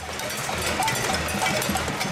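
A crowd banging pots and pans in a cacerolazo protest: a dense, unbroken metallic clatter of many quick strikes at once.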